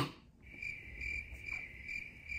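Crickets chirping, the stock 'awkward silence' gag sound after a joke: a faint, high, steady chirp pulsing a few times a second, starting about half a second in.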